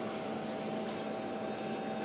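Room tone: a quiet, steady hiss with a faint hum.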